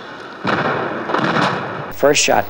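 Tank cannon shot: a sudden blast about half a second in, trailing off into noise that fades over the next second and a half.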